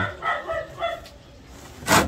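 A dog barking a few short times, then a single sharp knock near the end.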